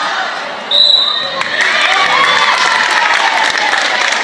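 A referee's whistle gives one short, high, steady blast about a second in, then the gym crowd cheers and shouts.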